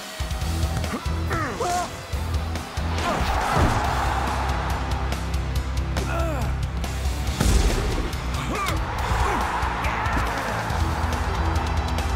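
Background action music with a heavy, steady bass line, laid with short swooping effect sounds and a sharp hit about seven and a half seconds in.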